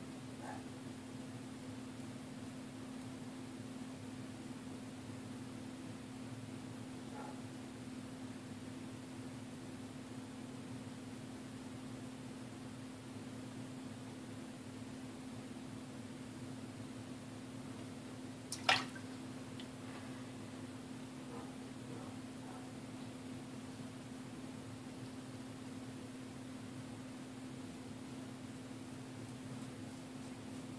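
Faint, sparse wet ticks of a kamisori straight razor shaving lathered neck stubble over a steady low hum, with one sharp click about two-thirds of the way through.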